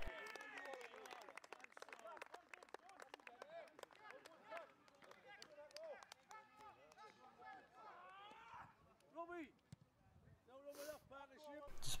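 Faint, distant shouts and calls of footballers' voices on the pitch, with scattered light clicks and a brief hiss near the end.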